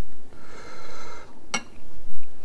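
Wooden chopsticks lifting sauce-coated instant noodles out of a glass bowl. There is a brief high squeak about half a second in, then one sharp click of the chopsticks against the bowl about a second and a half in.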